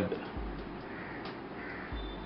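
Faint bird calls, a few short cries, over quiet room noise.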